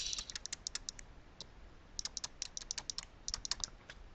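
Stylus tapping and ticking on a pen tablet as it writes, light clicks coming in quick clusters with short gaps between them.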